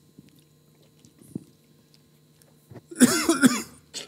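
A person coughing, two coughs in quick succession about three seconds in, after a quiet stretch.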